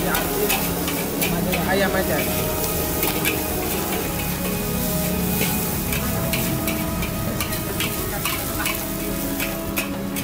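Nasi goreng stir-frying in a steel wok: a steady sizzle with the metal spatula scraping and clacking against the pan at irregular moments.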